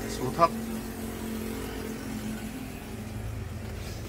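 Toyota Vios 1.5-litre four-cylinder VVT-i engine idling, heard as a steady low hum from inside the car's cabin.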